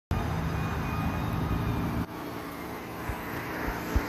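Road traffic going by: a vehicle's engine rumble that cuts off abruptly about two seconds in, followed by lighter traffic noise with a few short low thumps.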